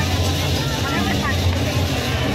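Dense crowd of voices and shouts over loud music with a deep bass note repeating about once a second.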